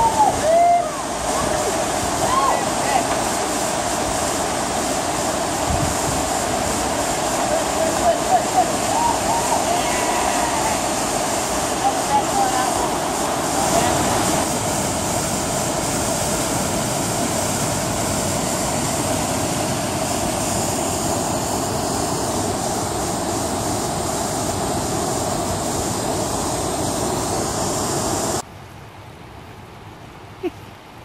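Whitewater of a river waterfall rushing steadily, with short calls from voices rising and falling over it several times in the first half. The water noise cuts off abruptly near the end, leaving a much quieter background.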